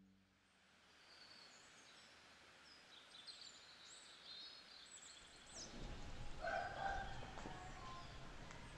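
Outdoor ambience of small birds chirping and twittering in short high calls. About two thirds of the way in, lower, louder calls of domestic fowl join over a general outdoor hum.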